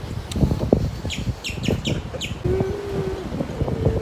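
A few short, high bird chirps about a second or two in, over a low, uneven rumble of wind on the microphone.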